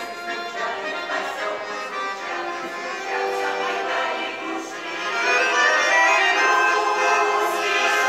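Russian folk choir singing with two accordions accompanying, getting louder about five seconds in.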